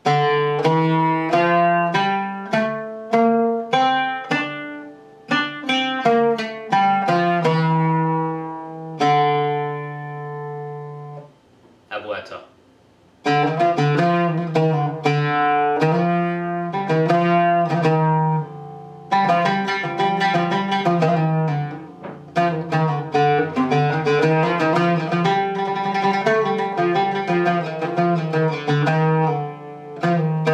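Oud picked with a plectrum, playing the Bayati/Uşşak scale (D, E quarter-flat, F, G, A, B-flat, C, D) in its Turkish form, where the quarter-tone second tends to be sharpest. It ends on a held note that fades about 11 s in. After a short pause the same scale is played as the Persian Abu-Ata, whose quarter tone tends to be flatter, and from about 19 s it becomes rapid tremolo picking.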